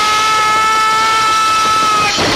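A loud, steady, shrill tone held throughout, rising very slightly in pitch, which cuts off suddenly at the end.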